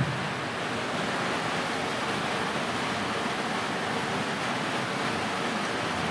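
A steady, even hiss of rushing noise at a constant level, with no distinct events in it.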